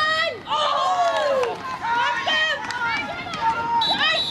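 High-pitched women's voices shouting calls during a football match, several overlapping, rising and falling in pitch throughout.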